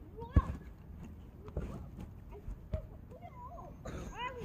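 Three light knocks about a second apart, the first the loudest: a small rubber ball dropping and being nosed about on artificial turf by a small dog at play.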